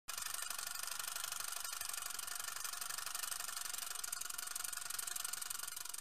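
Steady crackling hiss, a sound-design effect for a dust-particle logo animation; it starts suddenly and cuts off abruptly into silence.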